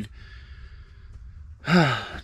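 A soft, breathy intake of breath in a pause between sentences, then speech starts again about one and a half seconds in.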